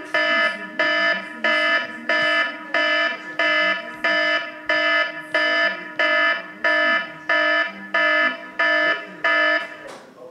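Electronic alarm sounding loud, evenly spaced buzzy beeps, about three every two seconds, which stop near the end.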